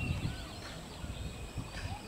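Low, uneven rumble of a moving passenger train running on the track, with scattered short high chirps over it.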